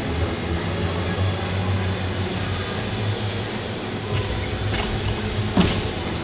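Arena ambience: a steady crowd murmur over background music. A few sharp knocks near the end fit a gymnast's feet striking the balance beam.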